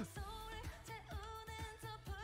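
K-pop song playing quietly: a female lead vocal singing over a steady dance beat.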